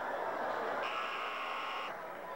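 Basketball scoreboard horn sounding once for about a second, a steady buzzing tone over crowd chatter.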